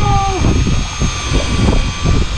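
Steady low rumble of wind and idling twin outboard motors on an open fishing boat, with a faint steady whine over it. A man's voice trails off in the first half second.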